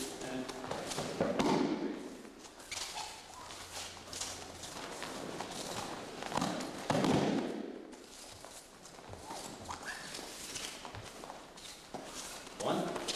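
Bare feet shuffling and sliding on a dojo mat during aikido throws. There are two heavy thuds of a body landing on the mat in breakfalls, one about a second in and a louder one about seven seconds in.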